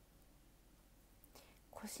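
Near silence: room tone, then a short breathy onset and a woman starting to speak near the end.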